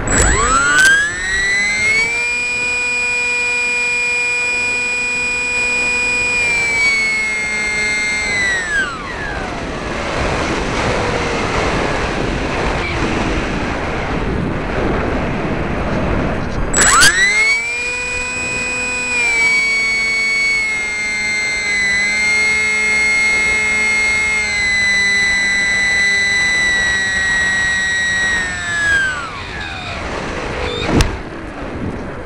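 Electric motor and pusher propeller of a Parkzone F-27Q Stryker flying wing whining at a steady high pitch under throttle for about eight seconds, then winding down. Air rushes past with the motor off. About seventeen seconds in the motor spools back up and runs for roughly twelve seconds with small shifts in pitch before winding down again near the end.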